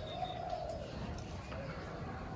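A dove cooing once, a soft low hoot in the first part, with a thin high bird note at the very start, faint against the outdoor background.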